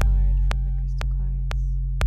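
Modular-synthesizer electronic music: a steady deep bass drone under a sharp click pulse about twice a second, with wavering tones gliding above it.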